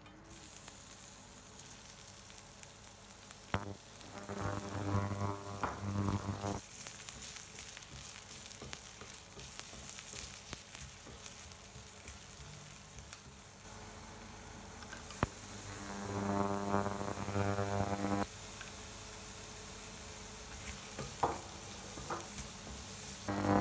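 Sliced onion and carrot sizzling in hot oil in a stainless steel frying pan, with scrapes and clicks of a wooden spatula stirring. A low, steady humming tone comes in twice, a couple of seconds each time.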